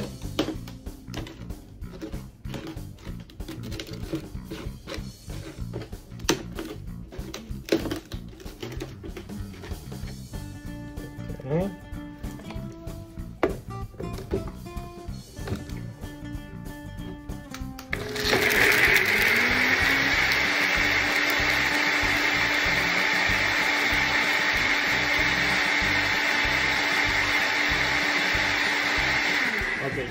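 NutriBullet Rx personal blender motor starting about two-thirds of the way in and blending a liquid marinade with garlic cloves. It runs loud and steady for about twelve seconds, its pitch rising as it spins up and falling as it winds down at the very end. Before it starts, there is light clattering of the cup being fitted onto the base over background music.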